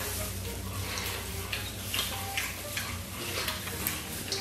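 Close-up mouth sounds of eating stewed beef trotters: wet chewing, smacking and sucking on the gelatinous meat, with short moist clicks two or three times a second over a faint low hum.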